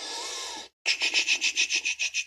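A coin scratching the scratch-off coating of a paper lottery scratchcard. A short steady rub, a brief pause, then rapid back-and-forth strokes at about seven a second.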